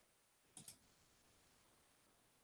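Computer mouse double-clicking: two quick faint clicks about half a second in, against near-silent room tone.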